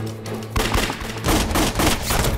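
A rapid burst of gunfire starting about half a second in, over dramatic background music.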